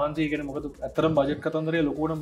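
A man's voice making wordless pitched sounds in several short phrases, like humming.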